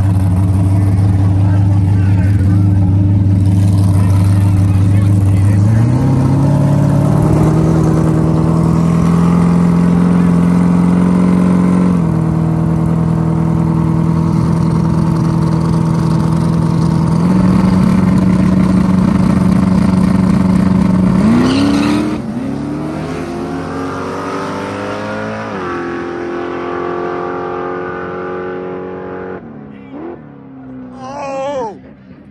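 Drag-racing street car engines run loud at a low idle. They step up to steady raised revs and hold them at the starting line. About 21 seconds in, the cars launch, revving up through several gear changes as they pull away and fade down the track.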